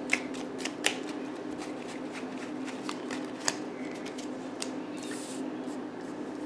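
A deck of tarot cards being shuffled and handled by hand: soft rustling with scattered sharp card snaps, and a brief slide near the end as a card is laid out on a wooden table.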